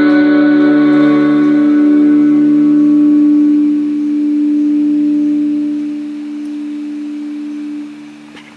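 A guitar's final chord left ringing as a steady held tone, slowly fading and dropping away sharply at the end.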